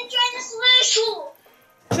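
Children's voices, singing and talking with held, sung notes. They break off in a short lull, followed by a sharp knock just before the end.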